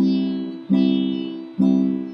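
Nylon-string classical guitar strumming a three-string C chord in steady quarter notes: three strums about a second apart, each ringing out and fading before the next.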